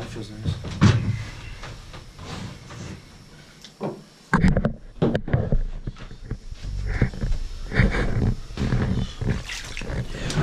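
Close handling noise on an ice house's plywood floor: scattered clicks and knocks, then from about four seconds in a sudden run of loud rustling, bumping and knocking as a hand rummages in a bag and handles a caught fish on the boards.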